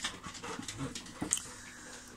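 Two dogs playing together: faint panting and scuffling, with a few sharp clicks on a wooden floor.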